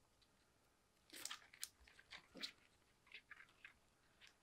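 Mostly near silence, with a few faint, short rustles and crackles in two small clusters, one about a second in and one near the end: hands handling a plant and its white root wrapping.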